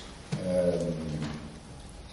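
A man's voice holding one drawn-out hesitation sound, a steady 'uhh', for about a second, then a short pause.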